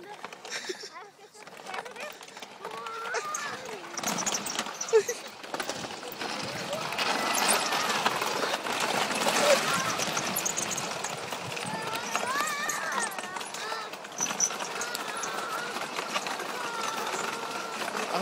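Children's voices calling out at a distance, over a steady rushing noise that grows louder about six seconds in.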